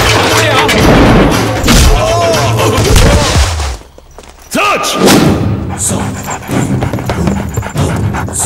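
Film action-scene soundtrack: dramatic background score mixed with thuds and shouts. It drops to a brief lull a little before halfway, then resumes with more shouting and hits.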